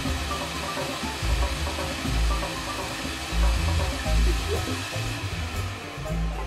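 Shop vacuum running steadily, sucking up sawdust and wood chips, under background music with a low, stepping bass line.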